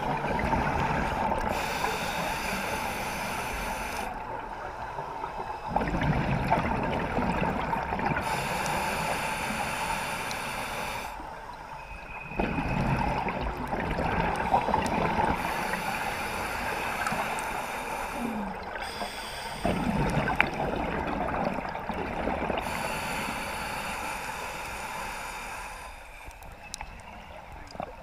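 Scuba breathing heard underwater through a camera housing. Surges of rushing exhaled bubbles from the regulator alternate with a higher hiss of inhaling, in a slow cycle of about six to seven seconds.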